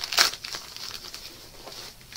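Plastic padded mailer being opened and handled, crinkling and crackling, with the loudest crackle just after the start and quieter rustling after it.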